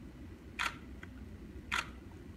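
Two camera shutter clicks about a second apart, over a steady low room hum.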